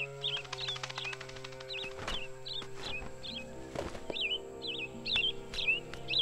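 A small bird chirping over and over, about two short up-and-down chirps a second, over soft background music with long held chords.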